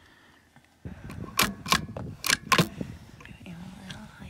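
Wind noise on the microphone with indistinct low voices, and four sharp clicks in quick succession a little over a second in.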